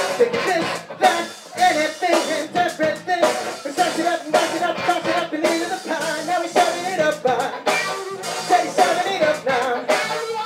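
Live funk rock band playing, with drum kit, electric guitar and a horn section over a steady beat.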